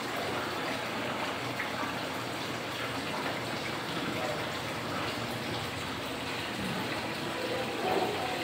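Steady rush of running water at a koi pond, with no breaks or changes.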